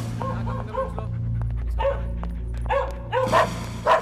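A dog barking again and again in short barks, sparse at first and loudest near the end, over a low steady music drone.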